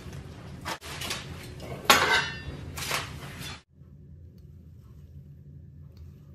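Aluminium foil and paper towel rustling and crinkling as a large raw bone-in beef rib is handled on a foil-lined baking tray, with a sharp clatter about two seconds in. The sound cuts off abruptly after about three and a half seconds, leaving only a faint low steady hum.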